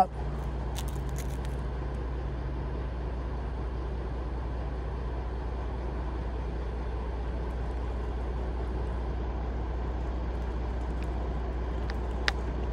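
A crane's engine running steadily with a low hum as the boom is raised. A few faint clicks about a second in.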